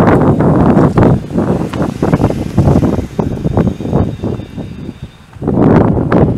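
Wind buffeting the microphone in loud, irregular gusts, easing briefly about five seconds in before rising again.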